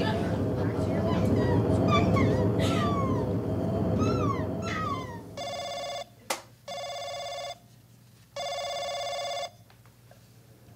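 Radio-drama sound effects: short bird calls falling in pitch over a low rumbling outdoor ambience, which fades out about five seconds in. Then a telephone rings three times, each ring about a second long with short gaps between.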